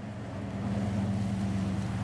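A steady low motor hum over an even wash of noise.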